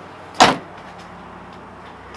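Rear liftgate of a 2015 Jeep Compass pulled down and shut, latching with one sharp thud about half a second in.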